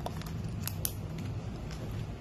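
A few light clicks and taps from a marker and a paper plate being handled on a tabletop, over a steady low hum.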